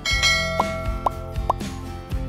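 Animation sound effects over steady background music: a bright bell-like ding as the notification bell is clicked, followed by three short rising blips about half a second apart.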